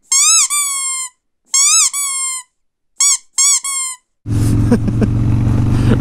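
Squeaky toy noise edited in over silence: about seven squeaks in three quick groups, each group a short rising squeak followed by a longer falling one. About four seconds in, the Harley-Davidson Street Bob's engine and wind noise cut back in.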